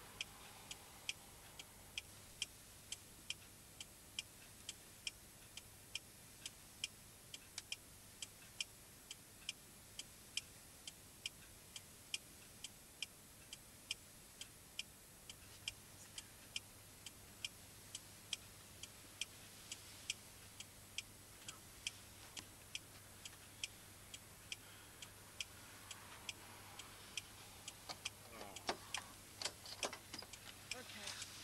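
Faint, regular ticking, about two sharp ticks a second, keeping an even beat throughout, with a low hum underneath and a few louder rustles and clicks near the end.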